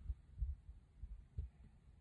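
A few faint, soft low thuds and a small click as tarot cards are handled and laid down on a cloth-covered table.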